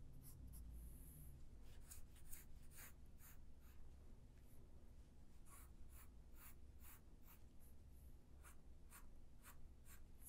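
Pencil strokes on paper: short, quick shading strokes, about two a second, faint, over a low steady hum.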